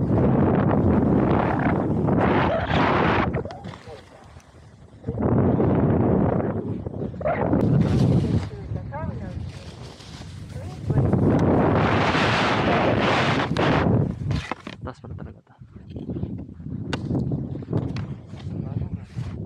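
Skis sliding and scraping over packed snow, with wind rushing over the camera microphone. The noise comes in several long surges with quieter dips between them, as each turn bites into the snow.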